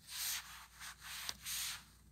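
Faint rubbing noises in several short bursts, with a small click about halfway through: a hand handling the tablet and swiping its touchscreen.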